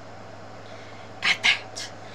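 Three short breathy puffs over a low steady hum: two loud quick ones close together about a second in, then a fainter one near the end.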